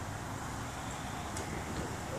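Steady low rumble of wind on the microphone outdoors, with one faint tick about a second and a half in.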